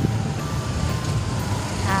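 A steady low rumble runs under faint background music.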